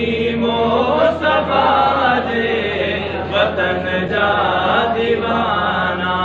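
Men's voices singing a Sindhi devotional song (manqabat) unaccompanied, in long drawn-out chanted lines through a microphone and PA, over a steady low hum.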